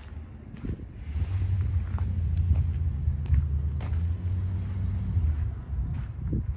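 Low, steady engine rumble of a large truck. It comes up about a second in and eases off near the end.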